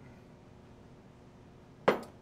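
A hollow hard plastic prop housing set down on a wooden workbench: one sharp knock near the end, with a brief ring after it.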